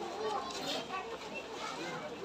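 Indistinct background chatter of several voices at a moderate level, with no clear words.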